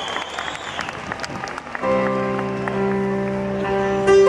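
Live concert audience applauding. About two seconds in, a piano chord starts and is held over the clapping.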